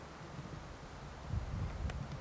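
Wind buffeting the camcorder microphone: low rumbling gusts that swell about a second and a half in, with a short click near the end.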